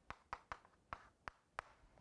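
Chalk writing on a chalkboard: about six faint, sharp taps of the chalk striking the board, spread unevenly over two seconds.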